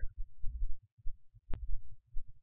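Low, irregular thumping in the bass, like a heartbeat, with a single sharp click about a second and a half in.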